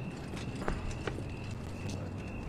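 A few light, irregularly spaced taps or clicks over a faint steady hum and a thin high tone.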